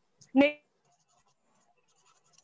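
A woman's voice giving one short spoken syllable about half a second in, followed by near silence.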